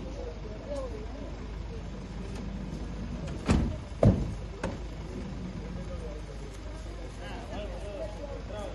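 Ambulance van idling, with two loud door slams about half a second apart a few seconds in, then a lighter knock. Voices talk in the background.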